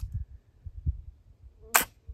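Flintlock rifle (.45 caliber Kibler Southern Mountain Rifle) snapping and flashing its priming in the pan, a single short sharp pop near the end, with a faint click at the start. The main charge does not fire: a flash in the pan.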